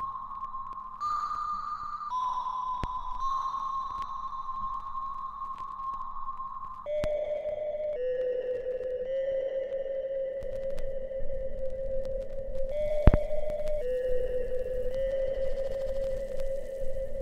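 Background music: a slow electronic melody of long held, pure-sounding notes that change pitch in steps and drop to a lower register about seven seconds in. A few sharp clicks sound over it, the loudest near the end.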